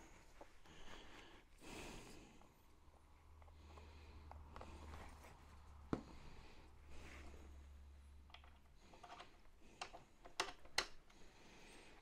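Near silence with a few faint clicks and taps of small metal parts and a thread-locker bottle being handled, one about halfway and two close together near the end. A low hum runs for several seconds in the middle.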